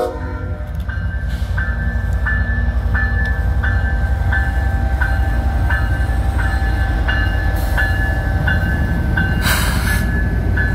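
CSX 1902 diesel locomotive passing close by at low speed, its engine rumbling steadily. Its bell rings in regular strokes, about three a second, and a brief hiss comes near the end.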